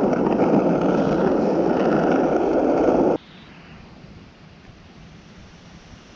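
Skateboard wheels rolling over rough asphalt, a steady rolling noise for about three seconds that cuts off suddenly, leaving only a faint background hiss.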